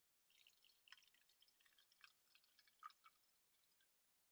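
Tea being poured from a pot into a cup: a faint, uneven trickle lasting about three and a half seconds.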